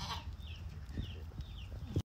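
Quiet farmyard ambience in a sheep pen: a low rumble with a few soft knocks and shuffling, and four faint, short, falling high chirps spread through it.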